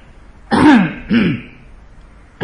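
A man clearing his throat twice in quick succession, each clear falling in pitch, the second shorter and a little quieter than the first.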